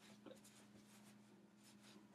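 Near silence: faint, soft rustling and rubbing sounds over a steady low hum.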